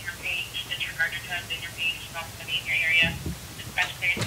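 Voice traffic over a handheld two-way radio: thin, tinny speech heard through the radio's small speaker, in short back-and-forth stretches.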